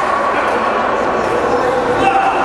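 Rubber-soled court shoes squeaking on the gym's wooden floor as players shift and push off, a couple of drawn-out squeaks, one high and one lower, over a steady hubbub of voices.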